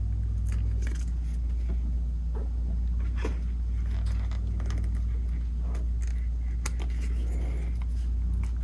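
Scattered light clicks and taps of metal rivet hardware and leather pieces being handled while holes are lined up, over a steady low hum.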